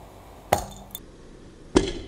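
3D-printed Ultem (PEI) Benchy cracking under a car tyre: two sharp pops, one about half a second in and one near the end. The print shatters, and a piece shoots out from under the tyre.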